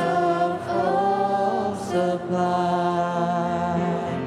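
A small mixed group of young men and women singing in harmony into handheld microphones, with long held notes.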